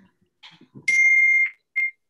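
An electronic beep: one steady high tone of about half a second, then a short second beep near the end.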